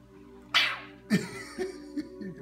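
Two sudden breathy vocal bursts from a man, about half a second apart, the second ending in a short laugh, over quiet background music.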